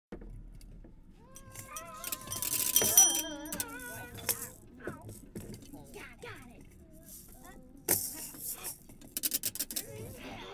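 Home-made Foley sound effects: a wavering, gliding cry for a few seconds, then assorted clatters and knocks, a sharp hit and a quick run of rattling clicks near the end.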